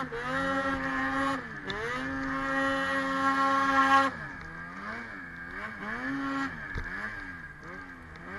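2017 Ski-Doo 850 snowmobile's two-stroke engine revving hard under load in deep snow, rising and dipping and then held high for about two seconds. About halfway through it drops off to a lower pitch with a series of short throttle blips.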